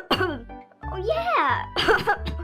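A voice coughing, once at the start and again near the end, with a short gliding vocal sound between, as a sick character. Children's background music plays underneath.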